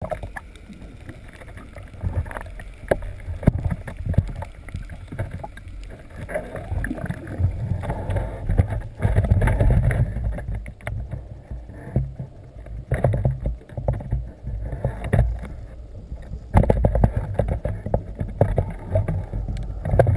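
Underwater sound picked up by the camera: an uneven low rumble of moving water that swells and fades, with many scattered clicks and pops.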